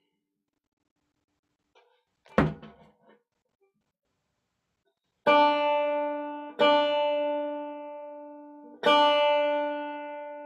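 5-string banjo's first (D) string plucked open three times, each note ringing bright and slowly dying away while it is read on a tuner; just tuned up, it sits close to pitch and a bit sharp. A single knock sounds about two and a half seconds in, before the first pluck.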